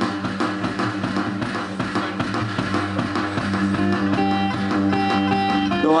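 Live instrumental music: an amplified acoustic guitar with a soundhole pickup, picked and strummed in a steady rhythm, with drum beats underneath.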